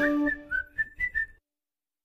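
A short whistled phrase of about six quick high notes, some sliding upward, as the music's last low note dies away; it cuts off suddenly about a second and a half in.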